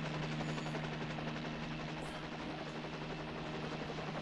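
A steady low drone from a film soundtrack: one held low tone with fainter tones above it over a soft hiss, unchanging throughout.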